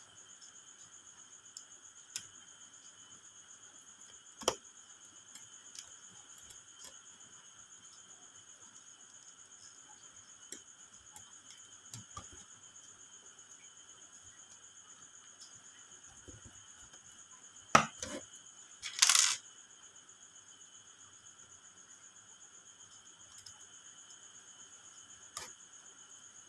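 Screwdriver working the small screws of an automatic transfer switch's breaker module: faint scattered clicks and ticks of the tool on the screws and housing, with a sharper click and a short scrape about 18 to 19 seconds in. A steady faint high-pitched tone runs underneath.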